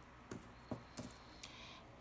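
About four faint, light clicks and taps, a third to half a second apart, from small objects being handled around a plastic seed tray and pot.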